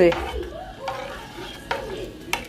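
Metal spoon stirring thick porridge in a metal saucepan, with one sharp click of the spoon against the pot late on. Quiet voices are heard in the background.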